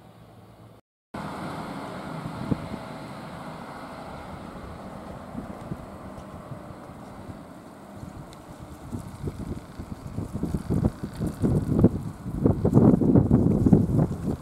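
Wind buffeting the microphone over steady outdoor street noise, the gusts growing stronger and louder from about nine seconds in. A brief dropout about a second in.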